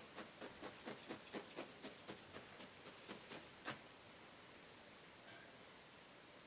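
Needle felting punch tool stabbing into wool: faint, quick ticks about four or five a second, which stop a little past halfway through.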